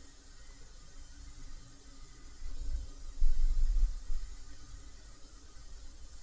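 Room tone: a faint steady hiss with a low rumble that swells for about a second and a half in the middle.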